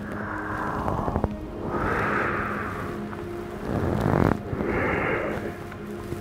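A man breathing deeply and audibly, several long breaths that swell and fade, over soft background music with steady held notes.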